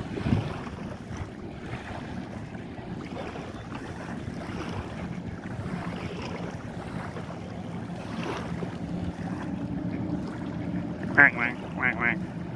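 Small waves washing and splashing against a paved riverbank, with wind on the microphone and a steady low engine hum from a boat on the river.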